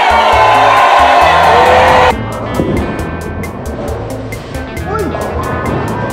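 Background music with a steady beat and bass line. Over its first two seconds sits a much louder, busy layer with voices in it, which cuts off suddenly.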